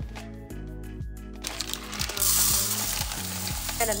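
Background music, then from about two seconds in a hand stirring dry brown rice grains in a cooking pot, a steady rustling.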